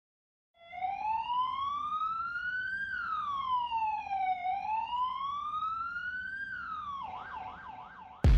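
Police siren wailing, rising and falling slowly twice, then switching to a fast yelp near the end.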